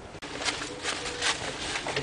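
Footsteps on dry leaves and brush, about two to three steps a second, with a faint steady low tone in the middle.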